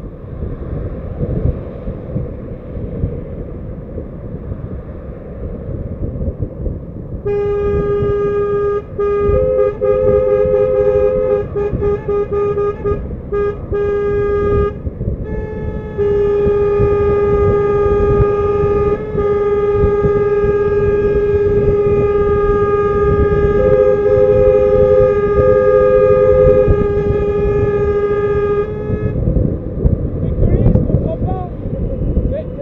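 Car horn sounding, first in broken toots from about seven seconds in, then in one long steady blast of about thirteen seconds that stops just before the end. A second, higher-pitched horn joins in twice. Underneath runs the rumble of a car driving.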